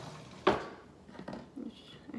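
A single sharp knock about half a second in, then a woman's soft speech.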